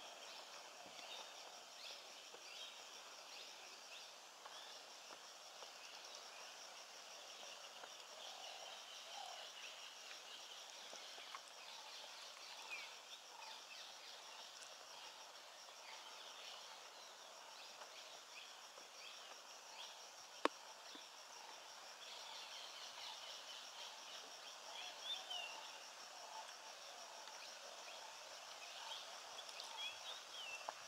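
Faint forest ambience: a steady, evenly pulsing high insect chorus with scattered distant bird chirps, and a single sharp click about two-thirds of the way through.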